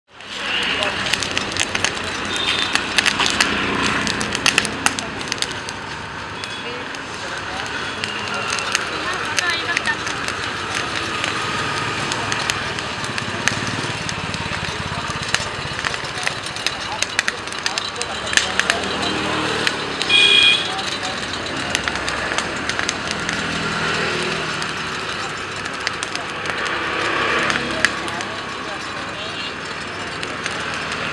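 Busy roadside ambience of indistinct voices and passing traffic, with crackling and popping from corn cobs roasting over a charcoal brazier. A short high-pitched tone sounds about twenty seconds in.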